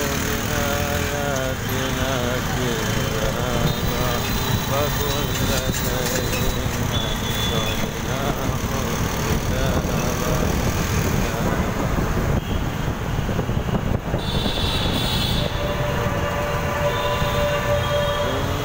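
Dense, slow city traffic heard from among the vehicles: a steady low rumble of motorcycle, auto-rickshaw and bus engines with road noise. A steady tone is held for a couple of seconds near the end.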